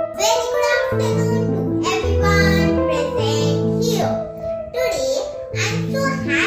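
A young girl singing over a keyboard accompaniment of held chords that change every second or so.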